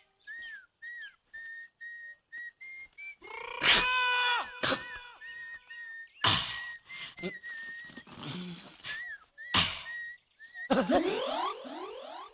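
A man whistling a tune in short, slightly bending notes. A few sharp knocks or swishes break in, and a burst of rising sweeps comes near the end.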